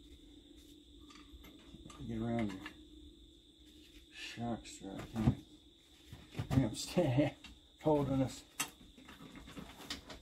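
A man making grunts and wordless muttering of effort, with a few sharp metal clinks and knocks as the UTV's rear hub knuckle and suspension parts are worked into place by hand. A steady high-pitched tone runs underneath.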